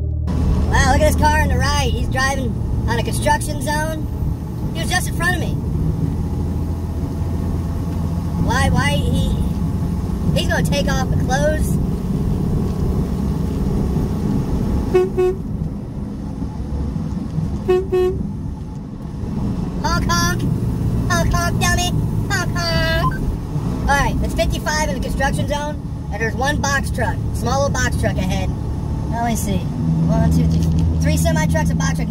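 Steady low drone of a semi-truck's engine and road noise in the cab while driving. Two short horn toots come about 15 and 18 seconds in.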